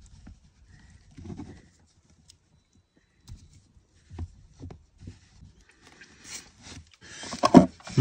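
Faint handling noises of fingers working the tiny plastic and metal parts of an N scale model trolley: scattered light clicks and rubs. A louder noisy stretch comes near the end.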